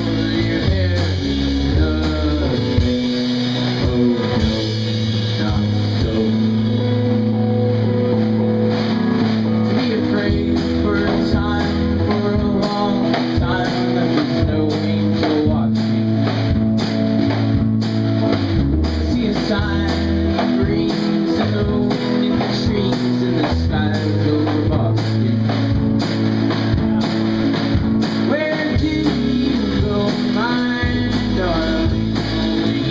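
Live rock band playing: a Fender electric guitar and a second guitar over a steady low bass line, with a drum kit keeping time in evenly spaced strokes from about a quarter of the way in. A male voice sings at times.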